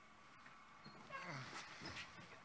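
Near silence with faint off-microphone voices from about a second in.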